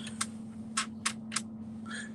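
Four short, sharp clicks in the first second and a half, over a steady low hum.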